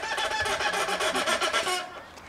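A person imitating a turkey's gobble: a rapid warbling trill lasting nearly two seconds that stops shortly before the end.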